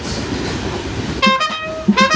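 Running noise of a moving passenger train carriage while the trumpet is silent, then a trumpet comes back in with short, quick notes a little over a second in.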